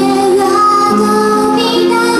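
A woman singing live into a microphone over backing music, amplified through the stage speakers, holding long notes.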